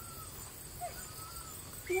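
Insects chirping in a steady high-pitched pulse, about four times a second. A voice starts near the end.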